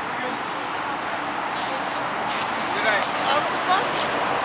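Steady city street traffic noise, with a short hiss about one and a half seconds in and faint voices near the end.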